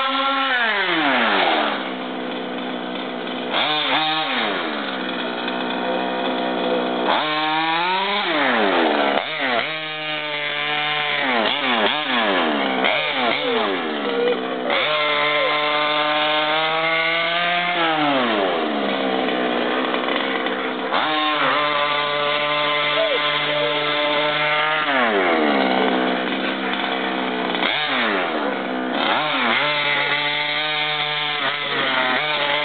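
HPI Baja 5B SS's 30.5cc two-stroke stroker engine revving high and dropping back again and again as the 1/5-scale RC buggy is driven, its pitch rising and falling with each throttle burst and pass.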